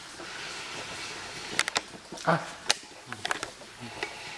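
Quiet room tone with a few sharp, small clicks and knocks, and a short "ah!" exclamation about two seconds in.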